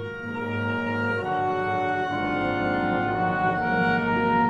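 Symphony orchestra playing slow, held chords on bowed strings, the harmony moving to a new chord about once a second.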